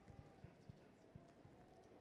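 Near silence: room tone, with a few very faint, short low knocks.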